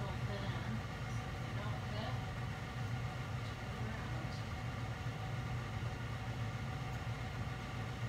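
Steady low machine hum, a constant drone with several even overtones and no change in level.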